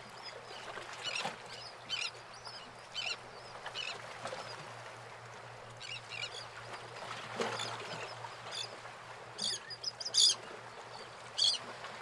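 Birds calling in short, repeated calls over a steady background hiss and a low hum.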